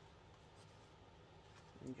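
Gel pen scribbling faintly on a paper card, testing that it writes.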